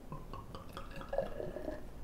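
Beer poured from a glass bottle into a drinking glass: a quiet pouring and splashing of liquid as the glass fills.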